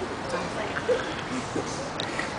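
Steady street background noise with a few faint, short vocal sounds.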